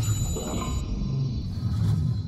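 Cinematic logo-intro sound design: a deep rumble under bright, shimmering high tones that fade about a second in, then a second swell near the end.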